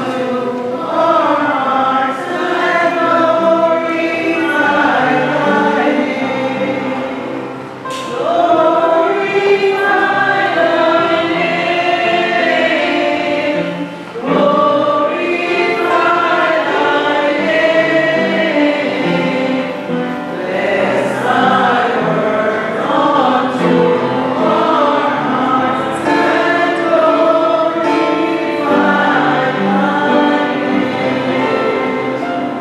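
Church congregation singing a hymn together, many voices in sustained phrases with short breaks between lines.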